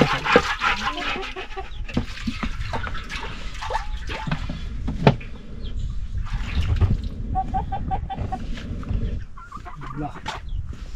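Chickens clucking, with a run of short clucks about seven seconds in, over water swishing and splashing as a cooking pot is scrubbed out by hand, with a few knocks of the pot.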